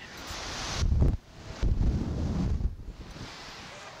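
Wind buffeting the microphone of the Slingshot ride capsule as it swings and tumbles in the air, with heavy low rumbling gusts about a second in and again around two seconds.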